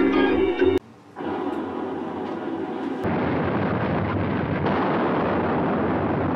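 Organ music cuts off under a second in. After a brief gap, a film soundtrack's volcanic eruption noise comes in: a steady, noisy explosion sound that grows louder about three seconds in and holds there.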